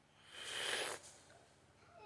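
One short slurp: a man sucking the broth out of the opened top of a cooked fertilized chicken egg, lasting under a second.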